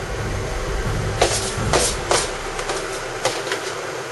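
Rose petals rustling as they are handled and dropped into a saucepan of melted soap. There are a few short crackly rustles, the clearest about a second in and around two seconds in, over a steady low hum.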